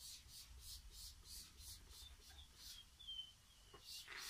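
Hand trigger spray bottle spritzing liquid onto plants: faint, quick repeated hissy puffs, about two or three a second.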